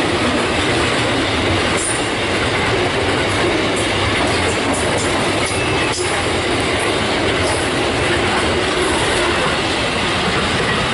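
Tank wagons of a freight train rolling past close by: a steady, loud rumble and rattle of steel wheels on the rails, with a few sharp clicks through it.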